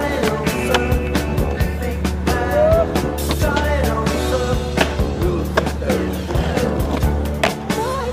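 Skateboard on street pavement: wheels rolling, the tail popping and the board clacking and landing in sharp knocks, with a grind on a metal handrail, all mixed under a music track.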